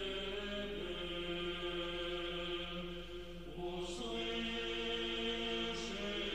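Soft sung chant, in the manner of Orthodox church chant, with voices holding long sustained notes. The notes change pitch about four seconds in.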